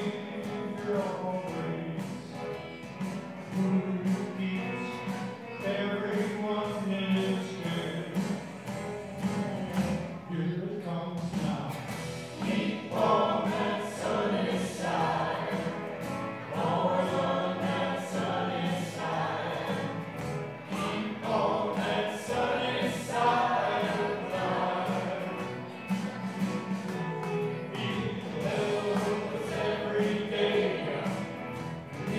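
Church praise band playing a gospel-style song, with violin and guitars under group singing.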